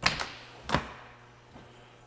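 Latch and hinged door of an ambulance side compartment clicking open: a sharp click at the start, a second just after, and a louder click under a second in.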